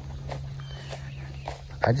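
Footsteps through tall grass, a few soft scuffs over a steady low outdoor hum.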